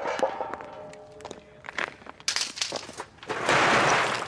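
Lumps of coal knocking and clattering in a bucket, then a louder, dense rattling rush near the end as coal spills out, over quiet background music.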